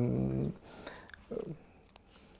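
A man's voice holding a flat, drawn-out hesitation vowel for about half a second. Then comes a quiet pause with a brief low vocal sound and a few faint clicks.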